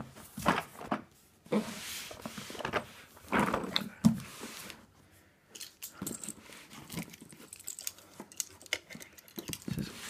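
A heavy taped cardboard parcel being shifted on carpet, with rustling and scraping, then a plastic box cutter working through the packing tape in a run of small clicks and crackles.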